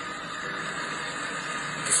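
Steady, even hiss of background noise coming through a phone's speaker during a gap in the recorded speech.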